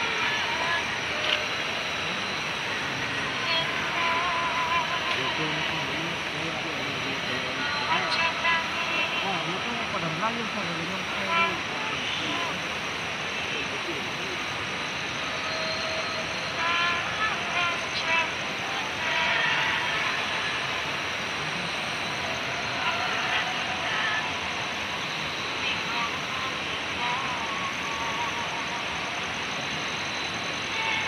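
Faint, indistinct murmuring voices over a steady outdoor hiss.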